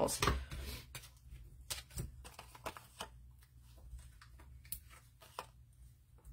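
Paper and card handled on a craft table: scattered light taps and soft rustles as foam adhesive dimensionals are peeled and placed and scissors are set down, with one sharper tap about two seconds in.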